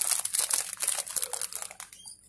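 Dense, rapid crinkling and rustling close to the microphone, thinning out towards the end.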